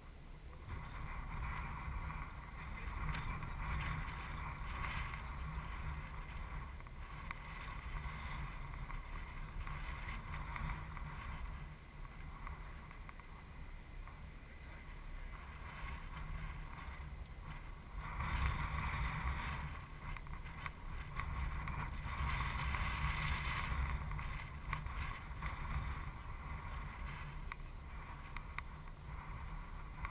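Wind buffeting an action camera's microphone, a steady rumbling hiss that swells and eases in gusts, loudest a few seconds in and again past the middle.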